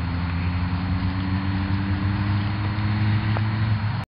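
An engine running steadily, a low hum that rises slightly in pitch, over a steady hiss.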